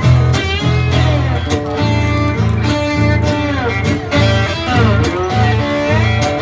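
Two acoustic guitars playing an instrumental break in a blues song: a strummed rhythm part under lead notes that slide up and down in pitch.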